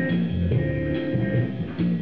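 Live band instrumental accompaniment: electric bass guitar and guitar playing a slow, steady line, the bass notes changing about every half second.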